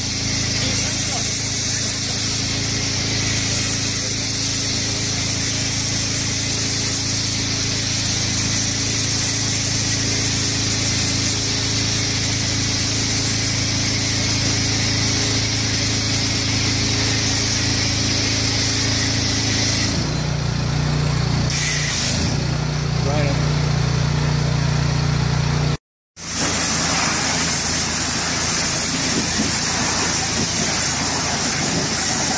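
Pressure washer spraying foam through a foam-cannon lance onto a truck trailer: a steady hiss of spray over a steady machine hum. The hum shifts about two-thirds of the way through, and the sound cuts out for a moment near the end.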